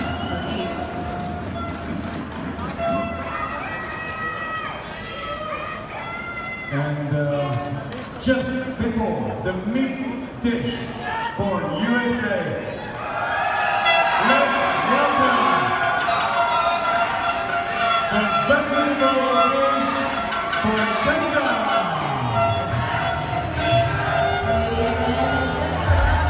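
Busy hall of spectators: voices and chatter with music over them, the mix growing louder and fuller about halfway through.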